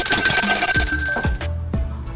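A loud, high ringing tone, alarm-like, sounds over background music with a low steady beat and stops about a second and a half in.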